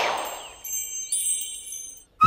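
A rushing whoosh fading out, then a high, sparkling chime effect: several bright ringing tones entering one after another from about half a second in.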